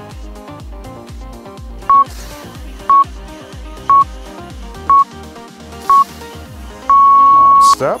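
Interval timer counting down: five short beeps one second apart, then one long beep that marks the start of the next work interval. Electronic dance music with a steady beat plays underneath.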